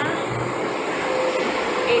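Loud, steady noise of an elevated light-rail station, with a steady hum setting in about half a second in, typical of a train running on the line.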